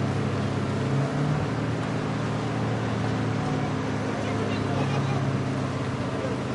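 A fire engine's engine runs steadily, driving its water pump to supply the hoses, as an even low drone.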